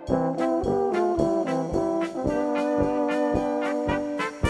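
Czech brass band playing a polka: a brass melody over a steady oom-pah beat, settling into a long held note a little past halfway.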